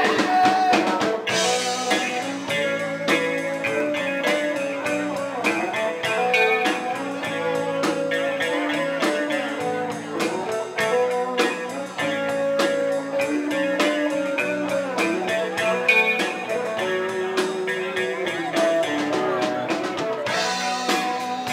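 Live rock band playing an instrumental passage: electric guitars and bass over a steady drum-kit beat, with no vocals.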